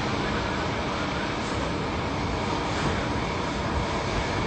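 Steady, even rushing noise of open-air city ambience heard from a high floor, with distant traffic blended into one wash and no distinct events.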